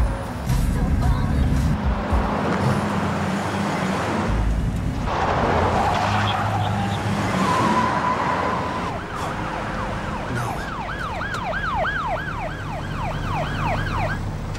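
A car passes close by about halfway through, then a police car siren starts up in its fast yelp, rapid rising-and-falling wails about two or three a second.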